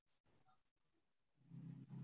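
Near silence: faint room tone, with a faint low hum coming in near the end.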